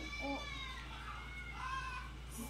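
A high-pitched, drawn-out cry that rises and then falls, followed near the end by a shorter one, over a steady low hum.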